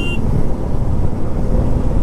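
Steady rumble of wind rushing over the microphone and the engine of a Royal Enfield motorcycle being ridden at road speed. A vehicle horn note cuts off right at the start.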